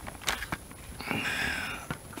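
Light handling sounds of a meal being topped by hand: a few small clicks and scrapes from a fork on a paper plate and a plastic food pouch. About a second in there is a louder short hissing rustle lasting under a second.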